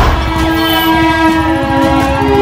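A vehicle rushes past close by, and a loud horn-like chord is held over the rumble of traffic.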